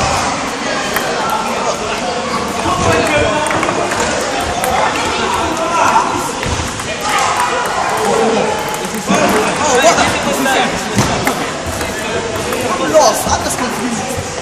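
Table tennis balls clicking off bats and tables in irregular rallies at several tables, over constant chatter of many voices.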